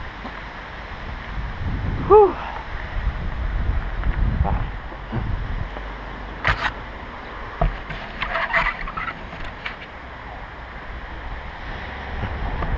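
Helmet-mounted camera on a mountain bike rolling slowly over grass: a steady low rumble from the ride, with a few sharp clicks from the bike. A brief call about two seconds in and faint voices later on.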